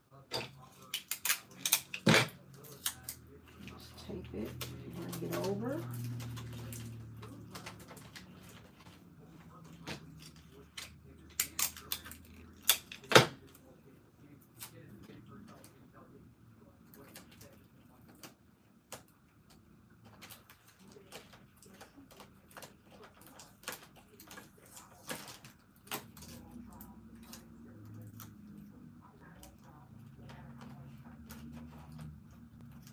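Hands tucking packaged snacks and a drink pouch into a plastic Easter basket: scattered sharp clicks, taps and crinkles of plastic packaging. The loudest come in clusters about one to three seconds in and again around eleven to thirteen seconds in.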